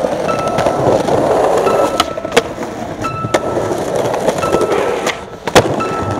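Skateboard wheels rolling over concrete paving, a rough steady rumble. Sharp clacks come a few times, the loudest shortly before the end.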